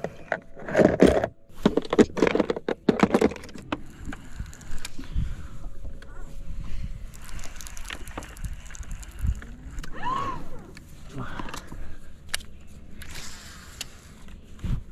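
A man's voice, mostly laughter, in loud broken bursts over the first few seconds. After that come quieter scattered knocks and handling noises from fishing gear in a boat.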